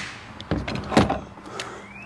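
Handling knocks as a cordless saw is set down and a cordless hedge trimmer picked up: three sharp clunks of the plastic tool bodies about half a second apart, the loudest about a second in, over faint rustling.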